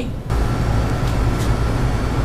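Steady low rumble and hiss of background noise, with a faint steady high tone over it, starting abruptly just after the start.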